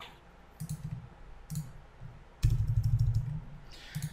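Keys pressed on a computer keyboard: a few single clicks, then a quicker, louder run of keystrokes about two and a half seconds in.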